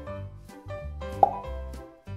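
Light children's background music with a steady bass line, and a single short pop sound effect dropping quickly in pitch about a second in.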